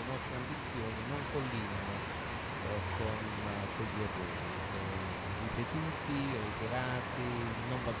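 A voice talking indistinctly over a steady hiss, as through a poor remote call line.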